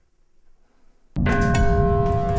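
Near silence, then about a second in a grandfather clock's chime strikes suddenly and loudly: a metallic ring of several held tones over a dense low din.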